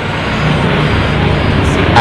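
Loud, steady, low rumbling background noise that swells in over the first half second and then holds even.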